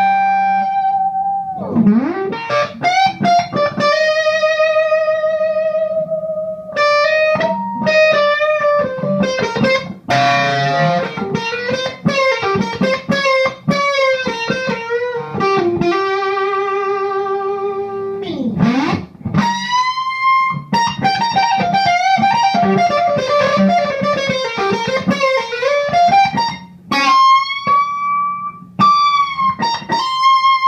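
Electric guitar played through a Mojo Hand FX Pompeii silicon fuzz pedal, switched on: a lead line of long sustained single notes, full of overtones, with string bends and wide vibrato.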